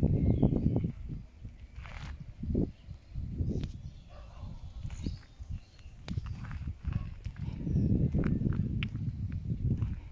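Footsteps and camera-handling noise: irregular low rumbling surges, loudest in the first second and again near the end, with scattered sharp clicks.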